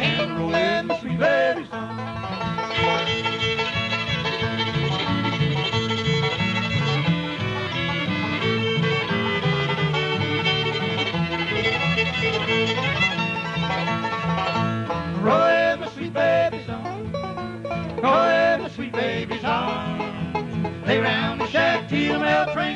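Live bluegrass band playing an instrumental break with no singing: fiddle and five-string banjo over acoustic guitar rhythm. Long held fiddle notes fill the middle of the break, and sliding notes come in the last few seconds.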